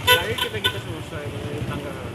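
Vehicle horn giving about three short toots in the first second, the first the loudest, amid street traffic.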